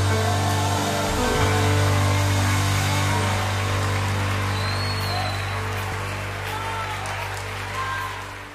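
Live worship band holding a sustained closing chord over a deep bass note, slowly getting quieter as the song ends.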